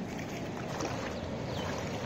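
Steady rush of river water spilling over a low dam, an even noise with no rhythm.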